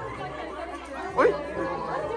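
Several people chattering in a room, with one voice calling out "oi" about a second in.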